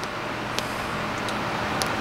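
Steady hiss of heavy rain outside the window, with a couple of faint ticks.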